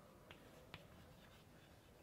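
Faint taps and scratches of chalk on a blackboard as words are written, two small clicks standing out in near silence.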